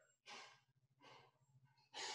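Near silence on an open video-call line, with a faint breath about a third of a second in and a softer one about a second in.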